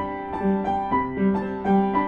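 Soft solo piano background music, playing a repeating broken-chord figure at about three notes a second.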